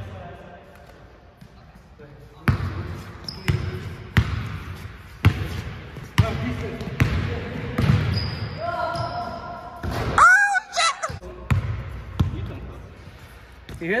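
A basketball being dribbled on a hardwood gym floor, bouncing about once a second, each bounce echoing in the large hall. Short high sneaker squeaks come in as the player drives.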